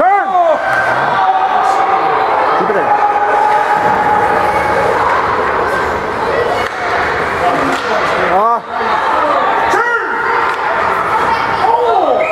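Hockey spectators in the rink shouting and cheering, several voices overlapping, with long rising-and-falling yells at the start and again about 8 and 10 seconds in.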